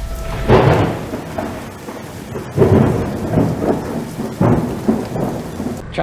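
Thunderstorm sound effect: a steady hiss of rain with several rumbling thunderclaps, the loudest about half a second in and near the three-second mark.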